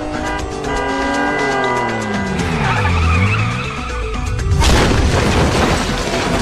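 Staged motorcycle crash effects over dramatic music: a descending whine and a tyre skid, then a sudden loud crash about four and a half seconds in as the bike goes down and slides along the road.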